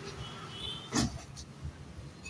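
Oxy-fuel gas torch burning against the thin sheet metal of a motorcycle silencer, over a low rumble, with one sharp metallic knock about a second in.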